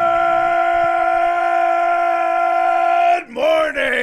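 A man's voice belting one long, loud note at a steady pitch, held for about three seconds and then cut off, with speech starting right after near the end.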